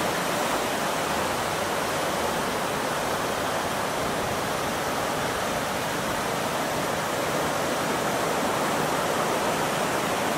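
Steady rushing noise of ocean surf and wind on a beach, unbroken and even in level.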